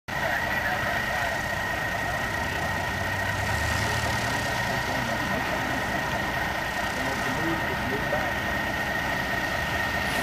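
Light aircraft engines running at an airfield, a steady hum with a steady high tone, with faint voices in the background.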